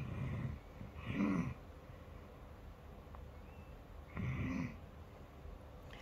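A sleeping girl with aspiration pneumonia breathing audibly just after deep suctioning and chest physio: three breaths with a low pitched note in them. The first two come about a second apart and the third about three seconds later.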